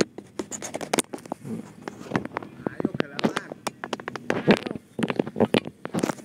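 Close handling noise from a camera being fitted back onto a rifle scope: a rapid, irregular run of scrapes, clicks and rustles right against the microphone.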